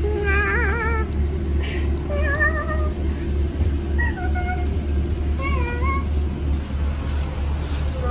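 About four short, high, wavering meow-like vocal calls, one every second or two, over the steady low rumble of a bus engine.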